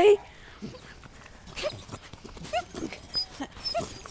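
Puppies giving a few short, high yips and whimpers through the middle, with some tiny squeaks near the end.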